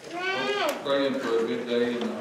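A high-pitched voice making a drawn-out sound that falls in pitch, followed by held tones, without words a recogniser could catch.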